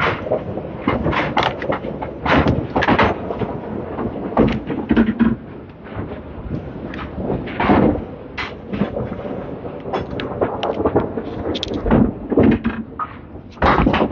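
Candlepin bowling alley: a string of sharp knocks and thuds from small balls striking and rolling on the wooden lanes and pins clattering, irregular and repeated throughout.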